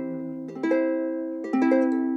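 Chords on a plucked acoustic string instrument, with no voice. A new chord is struck about half a second in and another about a second later, each left ringing.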